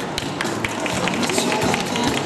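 Applause: many hands clapping in a dense, irregular patter.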